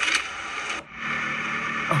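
Sport motorcycle engine idling with a steady hum, coming in after a short drop in sound just before the middle.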